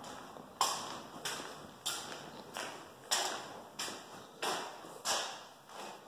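Steady walking footsteps on a bare concrete floor, about nine steps at roughly three every two seconds, each step ringing briefly in an empty drywalled room.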